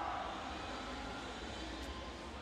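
Steady, even background noise of an indoor swimming arena, with spectators and water blending into one hum and no distinct events.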